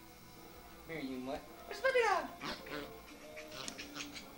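Puppy whimpering and yelping: a short cry about a second in, then a louder whine that falls steeply in pitch, followed by a few short yips.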